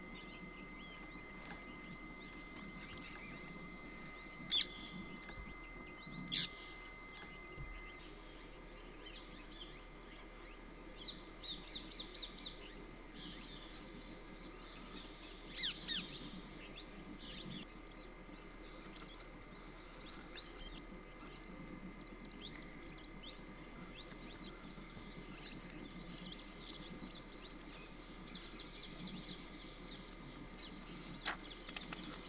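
Birds chirping and calling: many short, high chirps scattered irregularly, over a steady low background murmur.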